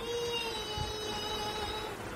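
A young girl's voice singing one long held note, unaccompanied, its pitch sinking slightly as it is held.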